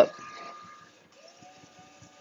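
EcoFreen Mr. T1 automatic DTG pretreat machine starting its spray cycle: a faint hiss of spraying with a thin motor whine that rises in pitch about a second in and then holds steady.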